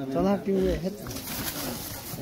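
Onlookers' voices calling out short, rising-and-falling "ha" shouts while two bulls fight head to head. A rustling hiss follows in the second half.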